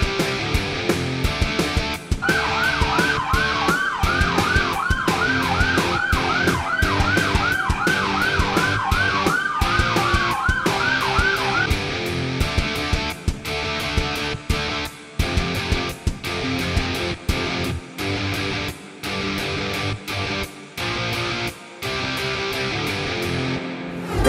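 A siren, heard from about two seconds in until about twelve seconds: a fast repeating yelp with a slower rising and falling wail under it. Rock music with a steady beat runs throughout.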